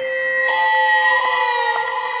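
Dramatic background score: sustained synthesizer tones that swell about half a second in and sink slightly in pitch, over a soft pulse about three times a second.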